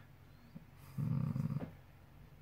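A man's brief, low hummed 'mmm' hesitation sound about a second in, over faint scratching of a ballpoint pen writing on paper.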